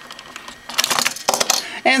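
Hard plastic toy parts clicking and rattling, a handful of quick clicks about a second in, as a Red Ressha toy train is taken out of a ToQ changer.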